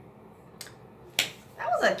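A faint click, then a single sharp click, most likely a fingertip tapping the phone's touchscreen to close the video player; a woman starts speaking right after.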